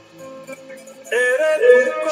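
Devotional Marian hymn: soft sustained accompaniment for about a second, then a singing voice comes in loudly.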